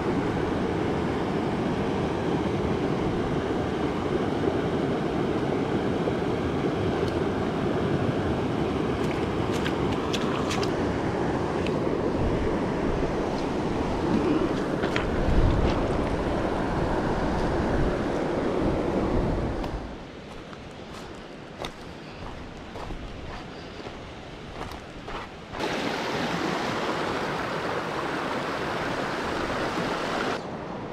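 Steady rush of flowing river water close to the microphone, with low rumbles of wind on the mic around the middle. About two-thirds of the way in it cuts to a much quieter stretch with a few small clicks, and the steady rush returns for the last few seconds.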